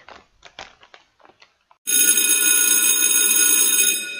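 Faint rustling and light clicks of booklets and parts bags being handled, then, about two seconds in, a sudden loud, steady ringing like a bell that lasts about two seconds: an edited transition sound effect marking the cut to the sped-up build.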